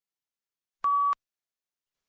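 A single short electronic beep, one steady mid-pitched tone lasting about a third of a second, about a second in: the cue tone before the next read-aloud passage.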